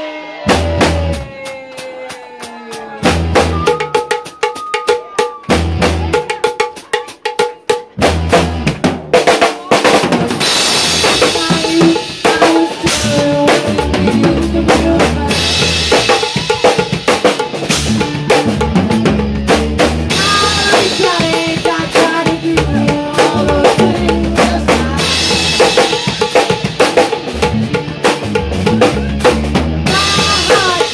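Live rock band heard from behind the drum kit, the drums loud up front with electric guitar. The first eight seconds are sparse hits and held guitar chords with gaps between them, and then the full band comes in and plays on steadily.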